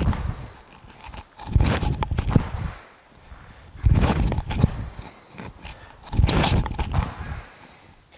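A person's feet landing on a gym floor after repeated standing lateral jumps, each landing a cluster of thuds and shoe scuffs. Three landings, about every two and a half seconds, with quiet between.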